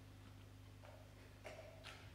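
Near silence: a steady low electrical hum from the stage amplification, with a faint brief noise about a second in.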